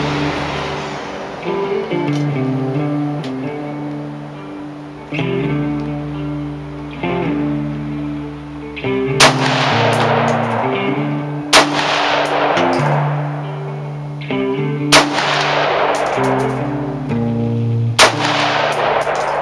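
Guitar music plays throughout. Over it, a Rock River Arms LAR-15 AR-15 rifle in .223/5.56 fires three shots, the first about halfway through and the others a few seconds apart, each a loud crack followed by a long echo.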